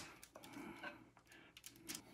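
Near silence with a few faint soft ticks and scrapes: a spatula scraping thick brownie batter out of a glass mixing bowl into a foil-lined pan.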